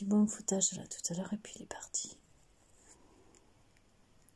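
A woman's voice speaking softly in short, unclear bits with whispered hissing sounds for about two seconds, then near silence.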